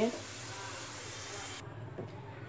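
Browned sliced onions sizzling in hot oil in a nonstick kadai, a steady hiss of frying. It cuts off abruptly about one and a half seconds in, leaving only a faint low hum.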